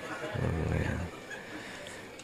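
A man's short, low-pitched hum into a handheld microphone, lasting under a second.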